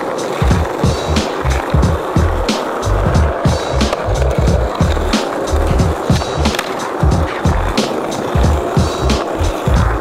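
Skateboard wheels rolling on asphalt, with the clack of the board during flatground tricks, over background music with a steady beat.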